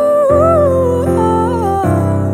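A woman singing a wordless, ornamented melodic line, the voice sliding up and down between notes, over sustained backing chords. The chord underneath changes shortly after the start and again near the end.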